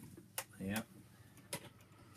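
Two sharp, separate clicks about a second apart: metal lock-picking tools knocking as they are handled and brought to a Euro cylinder lock held in a vise.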